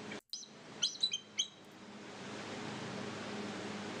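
Recorded bald eagle call played back: a quick run of four or five short, high, chittery notes about a second in, followed by a faint steady hiss of the recording.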